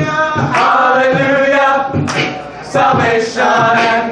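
Gospel vocal group singing sustained chords in close harmony with no instruments, over a regular beatboxed beat of low kicks and sharper snare hits.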